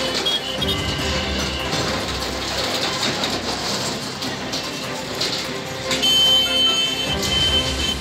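Diesel engine of a JCB backhoe loader running while its bucket tears down a sheet-metal shed and canopy, mixed with the crash and scrape of metal sheets. A steady high-pitched tone sets in about six seconds in.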